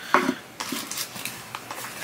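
Small hard clicks and taps of a crochet hook and its box being handled: one sharp click just after the start, then a few softer taps.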